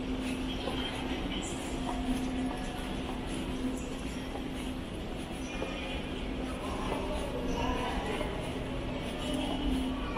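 Steady ambience of a large airport terminal hall: a constant low drone with a steady hum. Faint distant voices come through about seven to eight seconds in.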